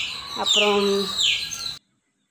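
A bird calling over and over, a high chirp that slides downward about twice a second, with a person's voice held on one note in the middle. All sound cuts off suddenly near the end.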